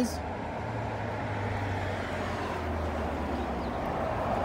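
Steady low vehicle rumble with a low hum, even throughout with no distinct knocks or clicks.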